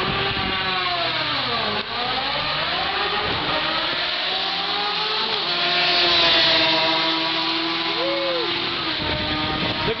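Motorcycles making a drag-strip run, their engines revving up through the gears in several rising climbs of pitch, loudest as they go past about six seconds in.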